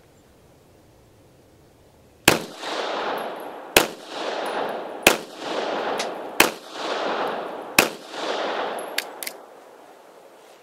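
Five shots from a 9mm Taurus G3C pistol, evenly spaced about a second and a half apart, each followed by a loud echo. Two lighter metallic clicks come near the end: a round failing to fire, a light strike from a weak striker on a reloaded primer.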